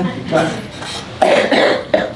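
A man's voice through a lectern microphone: a brief vocal sound, then a cough about a second in.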